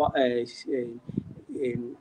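A man speaking in Somali.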